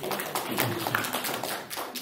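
Applause from a small audience: many hands clapping densely and unevenly, thinning out near the end.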